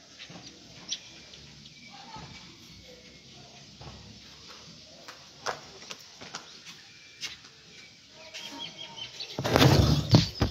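Quiet outdoor background with scattered short clicks and a few faint brief calls. About a second before the end, loud rustling and knocking as the phone is picked up and handled close to its microphone.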